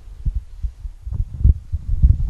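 Handling noise from a handheld microphone being moved: irregular low thuds and rumble, loudest about three-quarters of the way through.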